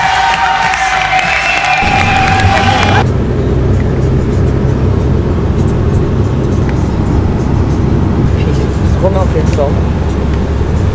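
Music from the ceremony hall cuts off about three seconds in, giving way to the steady low rumble of a moving road vehicle heard from inside its cabin.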